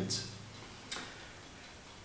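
Quiet room tone in a pause between spoken sentences, with one short, sharp click about a second in.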